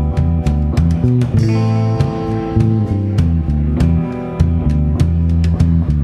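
Live worship band playing an instrumental passage: guitar and bass over a steady beat, with held notes and no singing.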